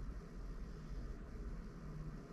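Faint room tone: a steady low hum with a light hiss, and no distinct events.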